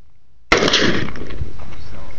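A single explosion goes off about half a second in: one sharp, loud boom that dies away over about a second.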